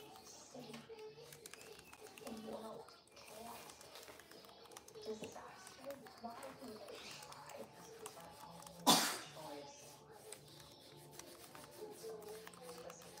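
Faint, indistinct voices in the room, and about nine seconds in a single short, loud burst of noise that stands well above everything else.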